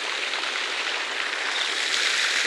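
Ornamental fountain's water jet spraying up and splashing down into its basin: a steady rush of falling water.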